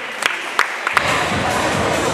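Claps in a steady rhythm, about three a second, in answer to a call for a round of applause. About a second in they give way to music over crowd noise.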